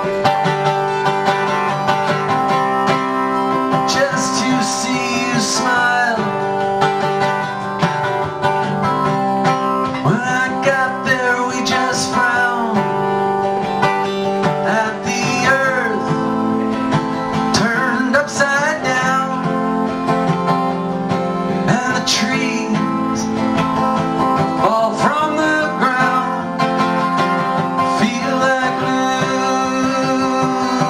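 A man singing a slow song while strumming a steel-string acoustic guitar, the guitar chords ringing steadily and the voice coming in phrases that start about four seconds in.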